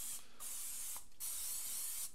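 Aerosol can of vegetable-oil cooking spray hissing in three bursts with short breaks between them, greasing a muffin pan.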